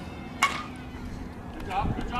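A softball bat strikes the ball once, about half a second in: a single sharp crack with a short ringing ping after it.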